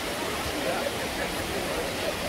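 Steady rush of water from a cascading waterfall, with faint voices of other people in the background.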